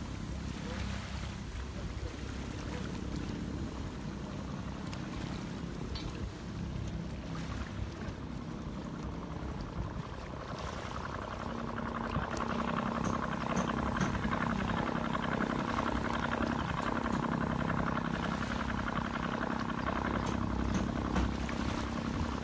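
Water lapping at the shoreline while a boat's engine runs on the harbour. The engine's steady hum grows louder from about twelve seconds in.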